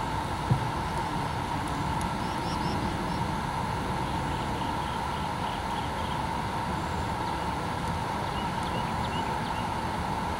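Steady outdoor background rumble and hiss with a faint steady hum, a single soft thump about half a second in, and a few faint high chirps in the middle and near the end.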